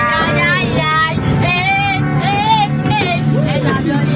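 High-pitched voices singing in short phrases over the steady low drone of a vehicle engine, heard inside the crowded passenger compartment.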